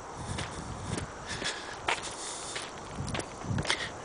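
Footsteps of a person walking on a sandy dirt road, about two steps a second, with low rumble from wind and camera handling.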